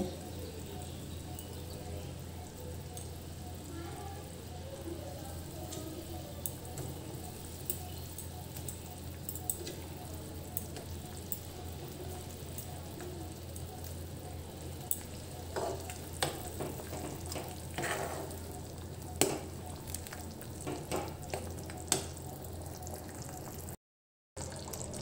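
Mustard gravy with fried katla fish simmering in a steel kadai over a gas flame, a steady low hiss. In the second half come scattered clinks and scrapes of a steel spatula against the pan.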